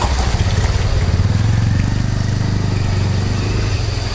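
Motorcycle engine running, a low hum that swells about a second in and eases off toward the end.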